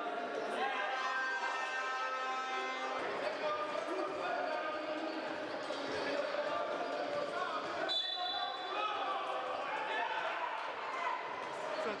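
Indoor basketball game: a ball bouncing on the court, with players' and spectators' voices echoing in a large hall. A brief high tone sounds about eight seconds in.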